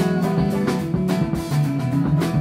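Rock band playing live, with guitar over a drum kit and regular drum hits.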